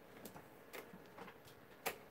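A quiet room with a few faint clicks and a sharper click near the end.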